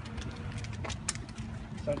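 Short sharp clicks and pops, about half a dozen, from a high-lift jack pumped under load with a composite-body water meter as its handle, as something gives or cracks under the strain.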